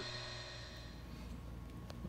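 Quiet workshop room tone with a faint steady hum, and a faint click near the end.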